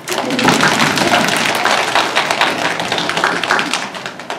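Audience applauding: many hands clapping at once, starting suddenly and thinning out near the end.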